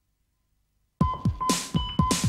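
Silence, then about a second in an electronic theme tune starts suddenly: a fast drum beat of about four to five hits a second under short repeated high beeps and swishing hiss.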